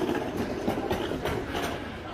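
Janitorial cleaning trolley rolling over paving, its wheels and load rattling in a run of small irregular clicks and knocks.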